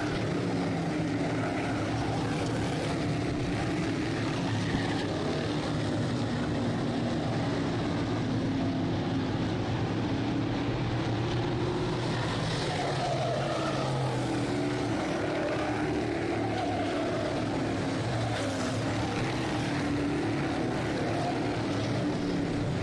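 Field of Sportsman modified race cars running at speed around a dirt oval: a steady drone of several engines at once, their pitches shifting slightly as the cars lap.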